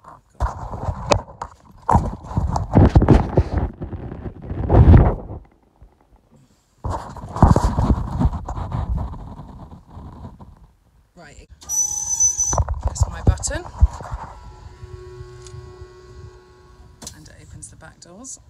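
Rustling and knocks of the phone being handled while moving about the van, then near the end a few seconds of steady electric motor whine from the van's wheelchair lift.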